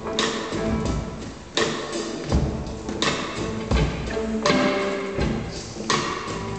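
Live rock band playing: a steady beat of drum hits under held chords from keyboards and guitar.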